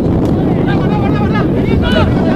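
Wind buffeting the camera microphone with a steady rumble, while several voices shout and call across a rugby pitch during open play.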